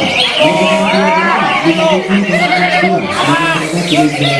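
Greater green leafbirds (cucak hijau) singing in quick, varied whistled phrases that rise and fall, over the voices of a crowd of people.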